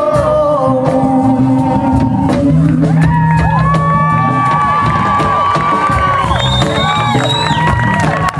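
Live band with voices, violin, jaranas and bass holding out the final notes of a song, joined from about three seconds in by whoops and cheering from singers and crowd.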